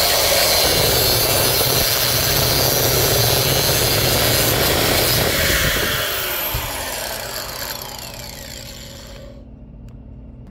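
Angle grinder with a thin cut-off wheel cutting through copper tubing, a loud steady grinding. About six seconds in, the cut is through and the grinder winds down, its whine falling in pitch as the wheel slows.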